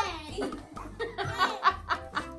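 Children laughing, a few short laughs in the second half, over background music.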